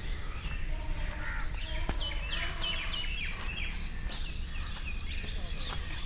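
Several birds chirping: many quick, high calls that slide downward, thickest about two to three seconds in, over a low steady outdoor rumble.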